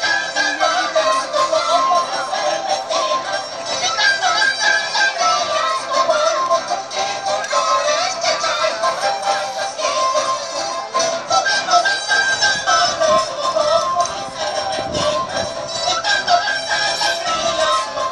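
Andean carnival music with a high-pitched sung melody over instruments, going in short phrases that repeat about every four seconds.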